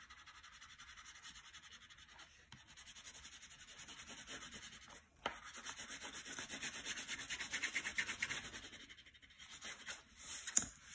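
Blue wax crayon scribbling on paper in rapid back-and-forth strokes, several a second, pausing briefly twice and growing louder in the second half.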